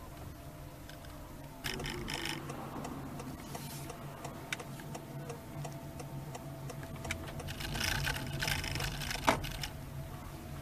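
Cabin noise of a Honda Freed Hybrid driving slowly: a steady low hum with faint steady tones, bursts of crackling noise about two seconds in and again near the end, and a sharp click near the end.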